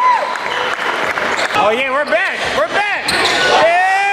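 Basketball play on a hardwood gym court: a ball dribbling and sneakers squeaking in a quick run of short rising-and-falling chirps from about a second and a half in, with players' voices.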